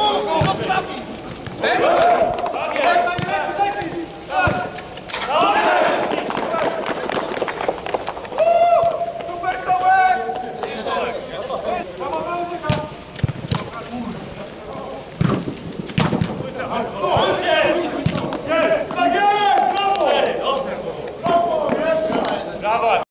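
Men's voices calling out to one another during a football game on artificial turf, with several sharp thuds of the ball being kicked.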